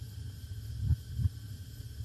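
A low, uneven rumble with a few soft thumps, and no speech.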